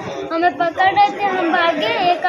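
A girl talking to the camera in a high-pitched voice.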